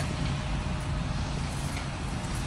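Steady street traffic noise: a continuous low rumble of passing vehicles.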